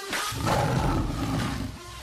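A lion's roar sound effect: one long, rough roar that starts suddenly, swells within the first half second and fades near the end.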